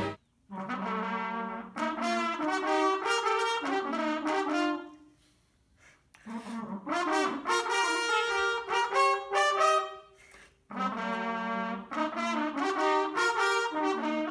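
Two homemade garden-hose natural horns blown with horn mouthpieces, playing a duet of short horn-call phrases in three passages with brief pauses between. The hose has no taper, which leaves the intervals out of tune.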